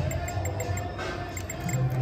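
Casino background music and machine tones over a steady low hum, with the electronic sounds of a video poker machine dealing a new hand.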